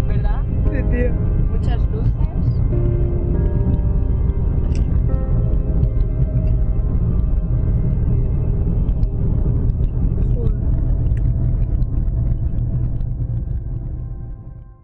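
Steady low road and engine rumble of a car driving on a motorway, heard from inside the cabin, with music playing over it.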